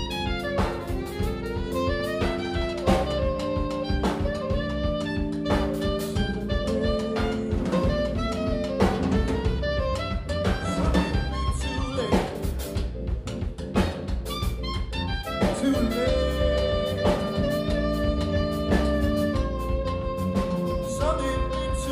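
Live jazz band playing an instrumental passage: saxophone melody over keyboard chords, electric bass and drum kit.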